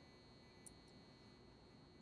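Near silence: room tone, with a faint steady high-pitched tone.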